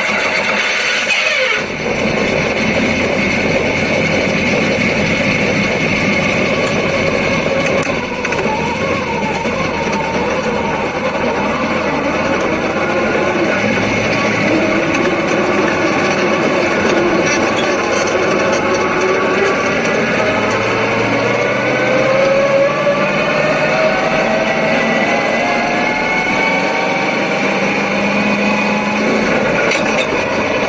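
Dirt late model race car's V8 engine running loud, heard from inside the cockpit, just after firing up. Over the second half its pitch climbs repeatedly as the car accelerates.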